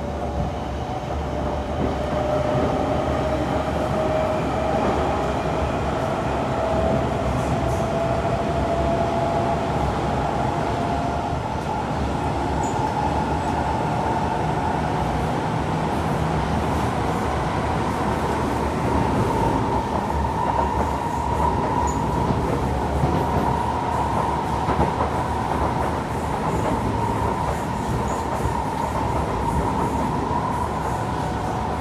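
Interior running sound of a Kawasaki Heavy Industries & Kinki Sharyo C151 metro train: steady wheel-and-rail rumble with a strong traction-motor whine that rises slowly in pitch as the train gathers speed.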